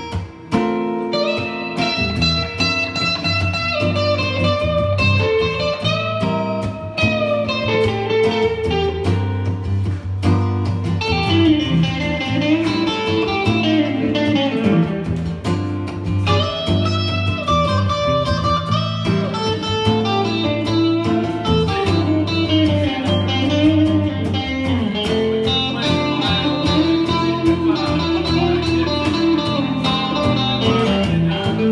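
Electric guitar playing a blues lead with bent notes over a strummed acoustic guitar, a live two-guitar instrumental passage.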